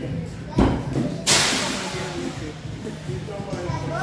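A short thud about half a second in, then a louder, sharp crash with a hissing tail that dies away over about a second, over murmuring voices.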